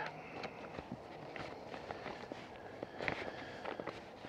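Soft rustling and crinkling of a plastic envelope and paper inserts being handled, with scattered small clicks that grow busier about three seconds in.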